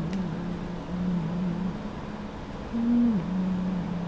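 A person humming a slow tune low with the mouth closed: long held notes that step down in pitch, a break of about a second near the middle, then a higher note that drops again.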